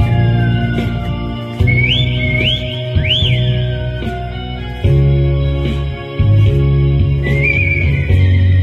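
Amplified human whistling over backing music: high sliding notes, with three quick rising swoops about two seconds in, one large rise and fall around three seconds, and a wavering held note near the end, over a steady bass and chord accompaniment.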